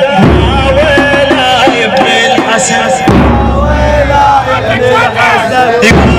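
A radood chanting a latmiya lament into a microphone through loudspeakers, with a crowd's voices joining in.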